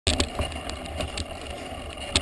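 Mountain bike rolling over a rough dirt track, with several sharp knocks and rattles from the bike over bumps on top of a steady low rumble.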